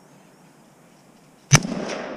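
A single 6.5 Grendel rifle shot about one and a half seconds in, followed by a long rolling echo.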